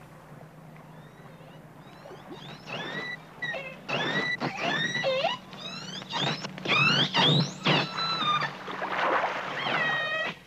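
Killer whale calls: a run of high, squeaky whistles and cries, most sweeping upward in pitch and some dropping. They start about two seconds in and come one after another to the end.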